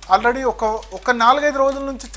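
Speech only: a person talking, with one long drawn-out vowel in the second half.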